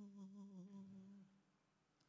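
A man softly humming one held note, which stops a little over a second in.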